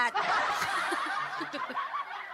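A woman laughing into a microphone, a run of chuckles.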